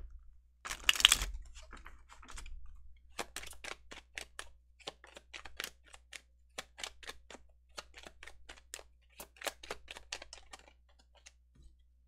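A deck of tarot cards being shuffled by hand: a short rustle about a second in, then a long run of quick card snaps, about four a second, stopping shortly before the end.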